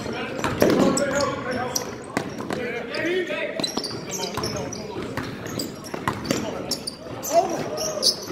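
Live basketball play on a hardwood court: the ball bouncing with sharp knocks, sneakers squeaking in short high chirps, and players' voices calling out.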